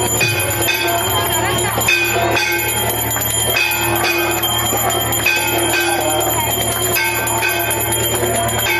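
Temple bells rung continuously for aarti, with a crowd of voices singing along. The mix is loud and steady, its tones shifting about every half second.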